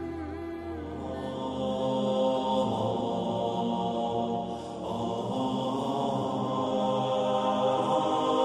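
Intro music in the style of a wordless vocal chant, sustained held notes that fill out after about a second, with a brief dip near five seconds.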